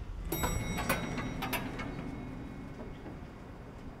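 Elevator arrival chime: a single bright ding about a third of a second in, ringing and fading over a second or so, with a few light clicks and a low hum.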